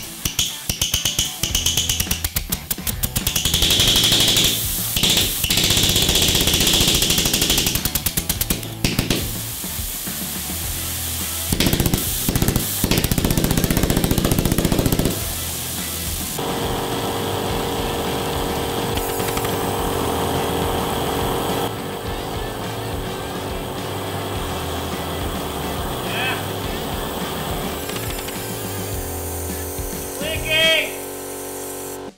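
Small 3D-printed resin jet engine with a water-cooled combustion chamber, firing as a rapid rattling stream of combustion pulses. It comes in loud bursts through the first half, then gives way to a steadier, quieter sound from about halfway.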